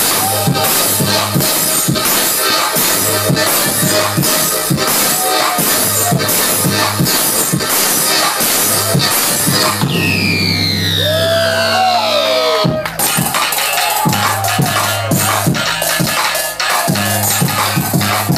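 Loud electronic trap music from a DJ set over a club sound system: rapid hi-hat ticks over a deep bass line. About ten seconds in the drums drop out under falling pitch sweeps, and the full beat comes back at once about two and a half seconds later.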